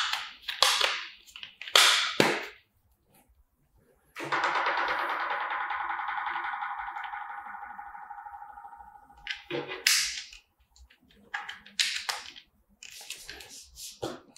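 Sharp plastic clicks and snaps from handling the lid and battery compartment of a motion-sensor trash can. About four seconds in, a steady tone with several pitches sounds and slowly fades over about five seconds, and then the clicking resumes.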